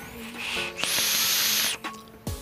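Someone drawing on a vape mod: a brief soft hiss, then about a second of loud, even hissing as air is pulled through the atomizer while the coil fires. Faint background music plays under it.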